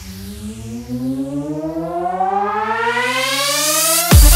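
Hard dance track build-up: a siren-like synth sweep climbs steadily in pitch and grows louder, with the bass beat dropping out right at the start.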